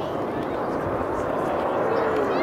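Steady jet noise from the Red Arrows' formation of BAE Hawk T1 jets passing by, with indistinct chatter from spectators over it.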